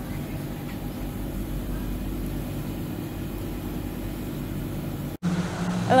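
Steady low drone of city ambience: distant traffic and a hum of building machinery, with a few constant low tones. It cuts off abruptly about five seconds in.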